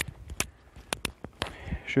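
Footsteps of a person walking on an unpaved earth forest path, short crisp steps about two a second.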